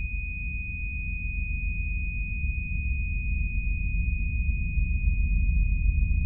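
Film sound design: one steady high-pitched tone held over a deep rumbling drone that slowly swells in loudness.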